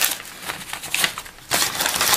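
Crinkling and rustling of packaging being handled, with a louder crackly stretch about one and a half seconds in.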